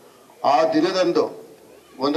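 Only speech: a man's voice says a short phrase about half a second in, with pauses on either side.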